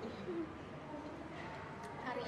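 Quiet room tone with a short, faint hummed voice sound early on and a light click near the end.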